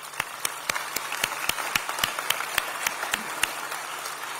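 Audience applauding, with one nearby person's claps standing out sharply above the crowd at about four a second.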